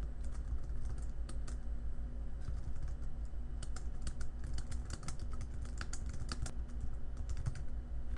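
Computer keyboard keys clicking as a line of text is typed, in quick irregular runs of keystrokes over a low steady hum.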